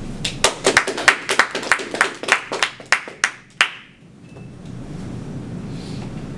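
Applause at the end of a talk: distinct hand claps, about four a second, that stop abruptly about three and a half seconds in. A steady low room hum follows.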